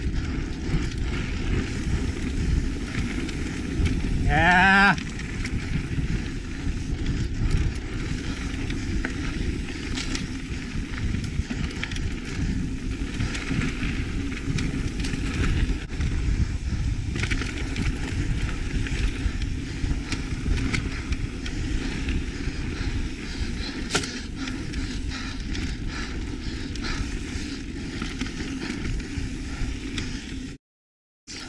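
Mountain bike ridden along a dirt forest singletrack, heard from on the bike: a steady rumble of tyres and trail with wind noise, broken by occasional sharp knocks as the bike goes over bumps. About four seconds in, a brief rising tone sounds over it.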